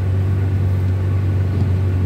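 A car driving, heard from inside the cabin: a steady low drone of engine and tyres on a wet road.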